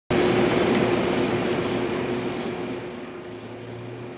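Liquid nitrogen hissing as it sprays into a steel stand-mixer bowl of ice cream mix and boils off into fog. The hiss starts suddenly and fades away over about three seconds, over a steady low hum.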